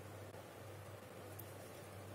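Faint room tone with a steady low hum and no distinct sound events.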